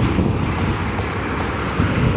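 Diesel engine of a Mack concrete mixer truck running steadily close by during a concrete pour, with wind buffeting the microphone.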